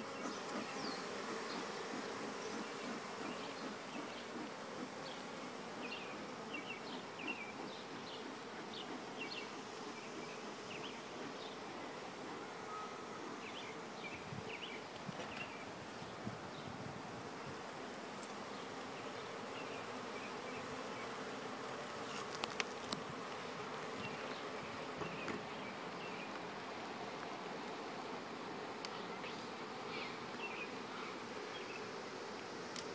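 Honeybee colony buzzing in a steady hum over the open hive, with a few faint clicks and taps scattered through and a couple of sharper clicks about two-thirds of the way in.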